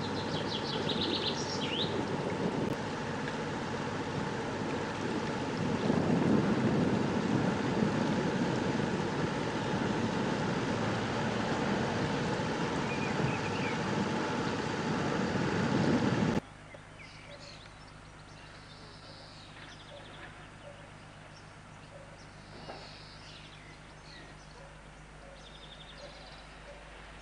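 A small yacht's inboard engine runs steadily while motoring along a canal, a constant drone with a steady hum. About sixteen seconds in it cuts off suddenly, leaving quiet outdoor ambience with birds chirping.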